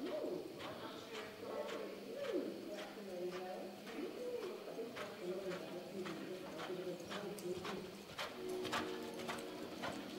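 Pigeons cooing in repeated rising-and-falling calls, over the hoofbeats of a horse loping in arena dirt, the hoof strikes coming faster and clearer in the last few seconds.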